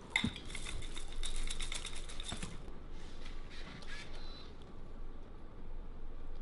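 Dry cereal pieces clattering into a bowl: many quick clicks for about the first two and a half seconds, then a few scattered, softer clicks of cereal and bowl being handled.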